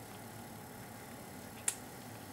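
Quiet steady room hiss, broken once near the end by a single short, sharp click.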